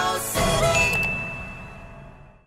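Outro jingle for a subscribe end screen, ending on a bright bell-like ding that rings on and fades away. There is a short click about a second in.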